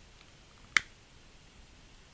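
A single short, sharp click about three-quarters of a second in, over a quiet room.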